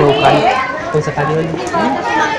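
Overlapping talk from several people, children's voices among them, with no clear words.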